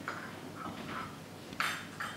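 A single short clink of crockery about one and a half seconds in, over faint stage room noise.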